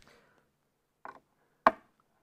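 Screwdriver working the screws of a P-90 pickup: a few short, sharp clicks of metal on the screw heads and pickup cover, the loudest about one and a half seconds in.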